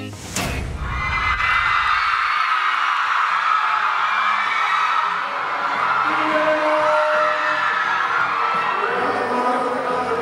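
A sharp hit just after the start, then a crowd of fans screaming and cheering over background music.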